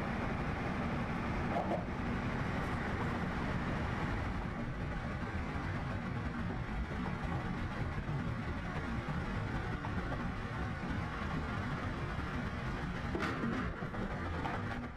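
Steady low rumble inside a car's cabin: engine and road noise of a car being driven.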